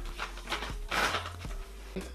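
Background music with a steady beat, about two beats a second, and a short rustle about a second in as a baby wipe is pulled from its packet.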